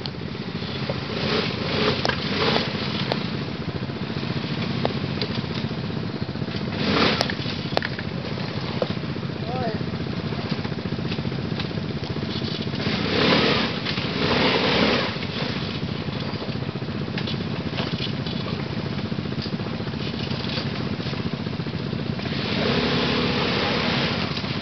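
Quad bike (ATV) engine running at low speed as it crawls through a deeply rutted, rocky dirt trail, swelling louder a few times.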